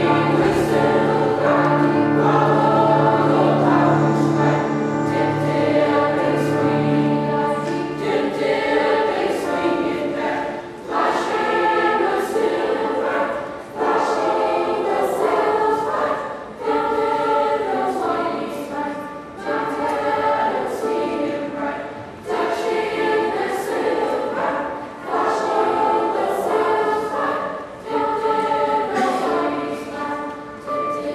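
Middle-school choir of young voices singing. The first eight seconds are long held notes, then the singing moves in short phrases with a brief breath between them every two to three seconds.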